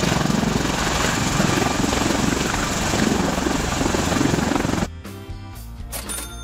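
Bell Boeing V-22 Osprey tiltrotor hovering, with dense rotor and engine noise. The noise cuts off suddenly about five seconds in, leaving background music.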